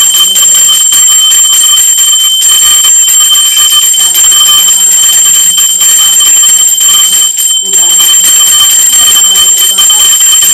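Puja hand bell rung without pause during the worship, a loud steady high ringing, with faint chanting beneath it.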